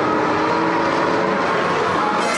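A full grid of 1999 Formula One cars' V10 engines held at high revs on the grid, a steady massed howl, while the start lights stay on far too long.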